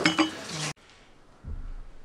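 Cups and crockery clinking over background chatter, cut off suddenly less than a second in. After that, a quiet room with a low rumble.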